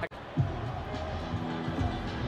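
Broadcast arena sound of a basketball game: a basketball bouncing on the hardwood a couple of times over low background music and crowd noise, coming in after a brief gap.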